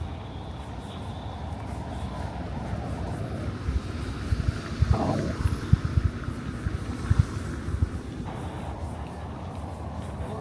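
A vehicle driving past on a city street, getting louder toward the middle and fading away near the end, with low thumps along the way.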